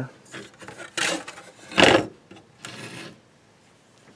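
A circuit board in a plastic frame being turned and slid across a concrete floor: three short scrapes, the middle one loudest.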